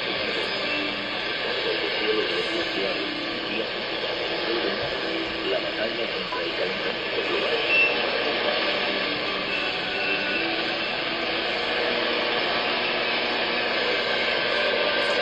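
Icom IC-7300 transceiver's speaker playing an AM shortwave signal near 7.21 MHz: a distant broadcast voice, heard faintly under steady heavy static and interference. The station is taken for Mexican radio.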